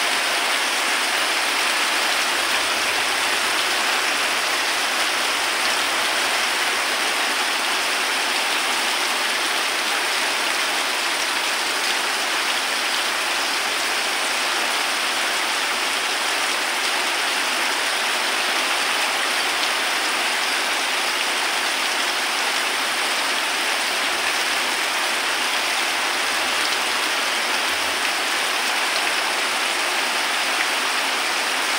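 Heavy rain pouring steadily onto standing floodwater, a constant even hiss without letup.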